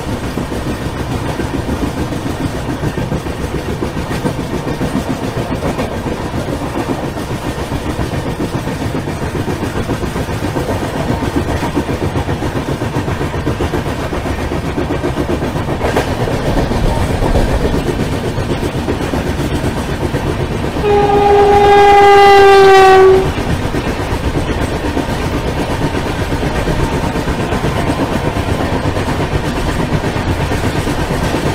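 Passenger train coach running at speed, heard from an open door: a steady rumble and clatter of wheels on the rails. About two-thirds of the way through, a train horn sounds for about two seconds, the loudest thing, its pitch sliding slightly down.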